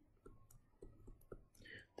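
Faint, irregular computer mouse clicks, about six in two seconds, as digits are handwritten with the pointer in a note-taking program.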